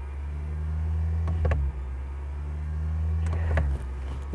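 Lexus ES 300h's four-cylinder petrol engine revved while parked, heard from inside the cabin: a low drone that swells twice with a short dip between. It is the engine's plain sound, with no synthesized engine note played through the speakers.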